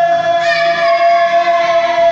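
Live singing with acoustic guitar accompaniment, at a steady loudness.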